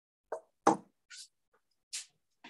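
Stainless-steel cookware being handled: a few sharp knocks and clanks, the loudest about two-thirds of a second in, with a brief hiss between them.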